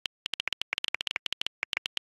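Keyboard typing clicks: rapid, uneven keystrokes, about ten a second, with a short pause just after the start.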